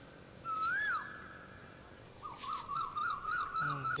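High whistled calls: a short rise-and-fall whistle, then a held note that fades, then from about halfway a warbling note wavering about four times a second.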